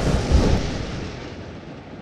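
A loud, deep boom, a cinematic impact hit, that strikes just as the music cuts out and fades away over about two seconds.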